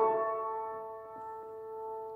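Closing chord on a grand piano, ringing out after the solo singing has stopped, growing quieter over the first second and then holding.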